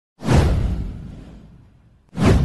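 A whoosh sound effect from an animated intro, with a deep low rumble beneath it, starting a moment in and fading away over about a second and a half.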